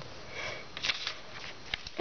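Faint handling noises as a rubber stamp and paper are moved on a tabletop, with one short breathy hiss a little under a second in and two small clicks near the end.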